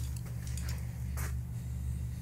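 A steady low hum, with a few faint ticks and a brief rustle a little over a second in.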